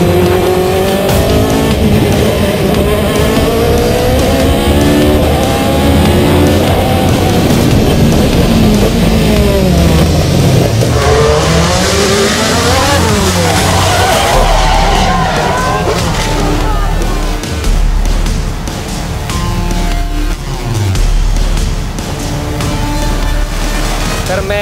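Osella FA30 sports prototype's Zytek racing engine at full throttle up a hillclimb, its pitch climbing and dropping again and again through gear changes and braking for bends.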